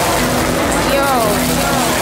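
Live experimental electronic music: a dense noisy wash over steady low drone notes. About halfway through, a processed voice slides down in pitch.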